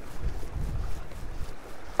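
Wind buffeting the action-camera microphone: a low rumble that rises and falls in gusts.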